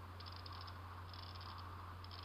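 Sturmey-Archer XRF8(W) eight-speed hub internals turned slowly by hand, giving two short runs of fast, fine ticking as the stages outrun one another, over a steady low hum.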